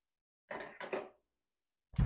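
Handling sounds of a plastic water-test meter pen being set into a drinking glass on a kitchen counter: two short soft knocks and rustles, then a sharper knock with a dull thump near the end.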